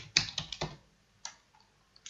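Computer keyboard typing: a quick run of keystrokes, then a single keystroke a little over a second in.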